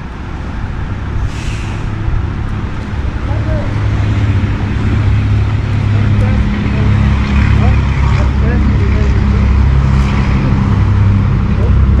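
Diesel engine of a semi-truck arriving, running low and growing steadily louder as it pulls in close. A short hiss comes about a second in.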